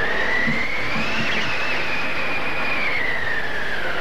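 Howling wind: a steady rush with a whistling tone that rises slowly, peaks about a second and a half in, then sinks back.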